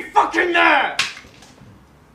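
Loud shouted speech for about a second, ended by a single sharp click, then quiet room tone.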